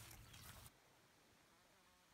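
Near silence: faint outdoor background noise, cutting out completely less than a second in.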